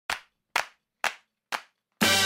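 A count-in of four sharp percussive strikes, evenly spaced about two a second, each dying away quickly. Music starts right after the fourth.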